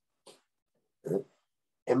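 A man's voice pausing between sentences: a faint breath, a brief wordless voiced sound about a second in, then speech resuming near the end.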